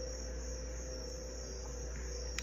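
Steady background room tone: a constant high-pitched drone with a low hum underneath, with nothing starting or stopping.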